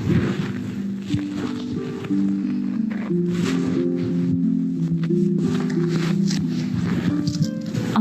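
Fiddle music: a lively tune of quickly stepping notes.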